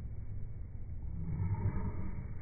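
Low, muffled rumble of outdoor background noise, steady and without any distinct event.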